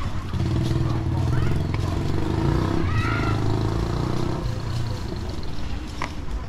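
A small motorbike engine running close by, steady for a few seconds and fading out about five seconds in.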